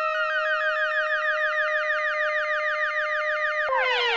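Yamaha CS20M monophonic analog synthesizer holding a single note while modulation sweeps its upper tone in a rapid, even repeating wobble, giving a siren-like sound. Near the end the pitch drops suddenly and glides down to a lower note.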